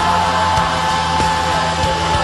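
A live band playing loud rock music, with heavily distorted guitars filling the sound, a long steady note held across it, and a drum beat hitting a little under twice a second.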